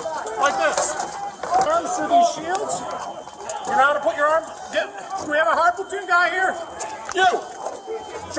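Several men shouting over one another in a packed crush, picked up by a police body camera's microphone, with scattered knocks and clatter. The voices are police officers calling out instructions to lock arms and hold their shields together.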